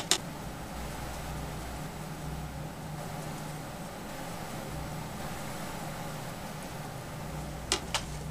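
A steady low hum with an even hiss of background room noise, and a short click near the end.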